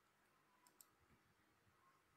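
Near silence, with two faint, quick clicks a little past a third of the way in.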